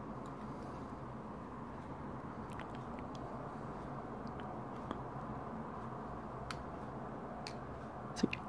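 A few faint, sparse clicks and light scrapes as a needle pries a 3 V CR2032 lithium coin cell out of a bike computer's plastic battery compartment, over steady room hiss.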